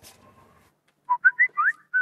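Phone messaging notification: a quick run of five or six short, rising electronic tones, starting about a second in.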